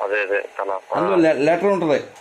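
Speech: a person talking in a run of quick phrases, with a short pause a little under a second in.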